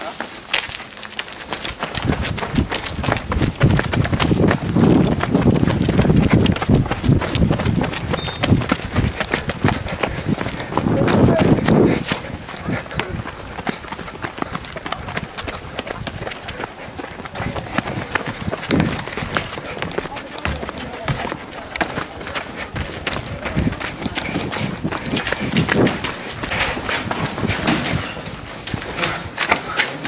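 Two people running on pavement and paving slabs: quick, uneven footfalls keep coming, with voice sounds and breathing mixed in, loudest in stretches a few seconds in and again around twelve seconds in.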